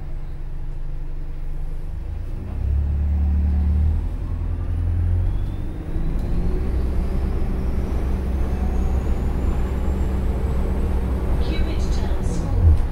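Cabin sound of an Alexander Dennis Enviro400H hybrid double-decker bus on the move: a low engine and road drone, with the electric traction motor's whine climbing steadily in pitch as the bus gathers speed.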